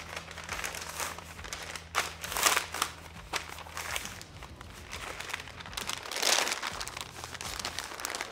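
Butcher paper crinkling and rustling as it is folded and pressed tight around a brisket, in irregular bursts, loudest about two and a half seconds in and again about six seconds in.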